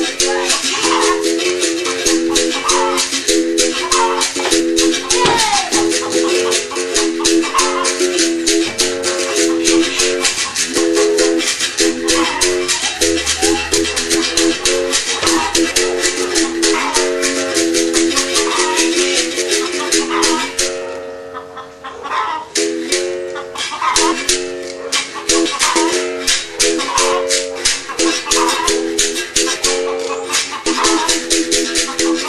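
Capoeira berimbau played in a steady rhythm: the stick strikes the steel wire and the caxixi rattle shakes with each stroke, and the bow switches between a lower and a higher note. The playing breaks off briefly about two-thirds of the way through, then resumes.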